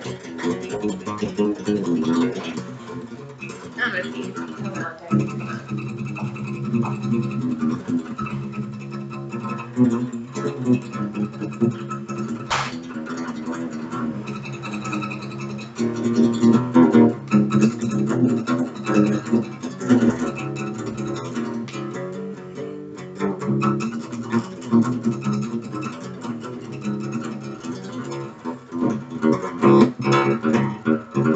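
Acoustic guitar played solo with a pick. The playing gets louder and busier about sixteen seconds in.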